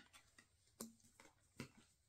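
Three faint light clicks, about a second apart, of small wooden rune discs being set down and touched on a table, against near silence.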